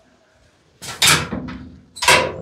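A gate being opened: a loud scrape and rattle starting about a second in and dying away, then another starting near the end.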